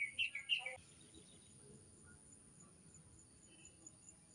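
A bird calling in a fast run of high chirps, about four a second, that stops about a second in; after that only faint background remains.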